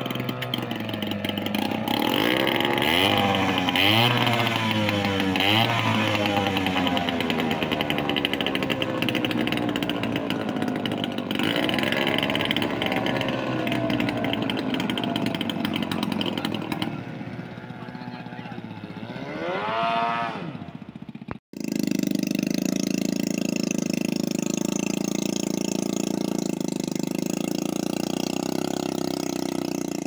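Small outboard motors on racing powerboats running hard, their pitch sweeping up and down again and again as the boats speed across the water and past. About two-thirds of the way through, the sound cuts off suddenly, and an outboard then runs at a steady pitch.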